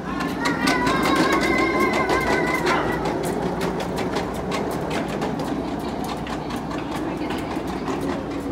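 Plastic wheels of a toddler's ride-on toy rolling over a concrete walkway: a steady rumble with many small clicks and rattles. A high, steady tone is held for about two seconds near the start.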